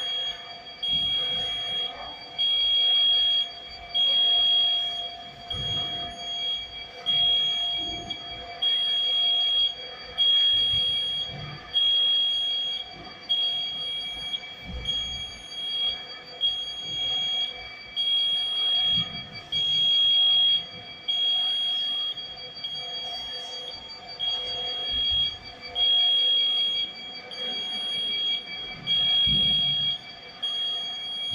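Warning beeper on a motorized mobile racking carriage, a high electronic tone pulsing about once a second while the carriage travels along its rails, over a steady lower hum.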